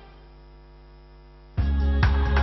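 Faint steady electrical hum, a mains-type buzz of evenly spaced tones. Music cuts in suddenly near the end, with a strong low beat.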